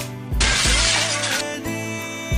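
Mobile phone thrown down and smashing on a tiled floor: a shattering crash about half a second in, lasting about a second, over background music.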